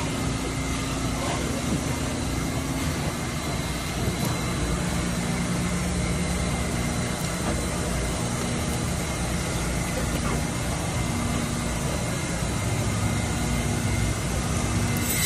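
Steady hum of running machinery, with a low drone that breaks off and returns several times and a faint steady high whine above it.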